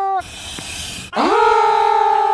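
A drawn-out voice-like "ohhh" held on one steady pitch. One such tone ends just after the start, a short noisy stretch follows, and a second one rises in about a second in and is held steady.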